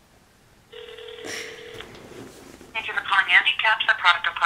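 A steady telephone tone of about a second comes through a phone's speaker while the call is put through. Near the end a representative's voice starts answering over the line, with the thin sound of phone audio.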